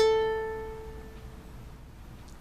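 Ukulele's open A string, the top string of standard GCEA tuning, plucked once. The note rings and fades out over about a second and a half.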